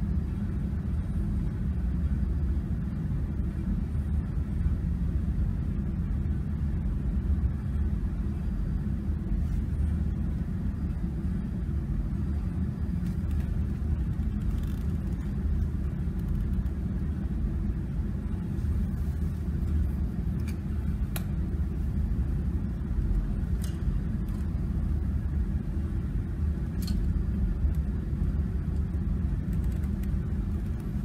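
Steady low rumble of workshop background noise, with a few faint ticks in the second half.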